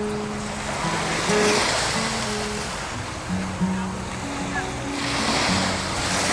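Surf washing on the shore, swelling twice, once about a second in and again near the end, under background music with held low notes.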